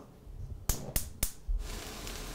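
Three sharp clicks about a third of a second apart, then from about halfway through a steady sizzle of food frying in a cast iron skillet on a gas stove.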